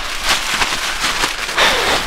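Plastic waste bag of a PETT portable toilet crinkling and rustling as hands hold it open, with a louder rustle near the end.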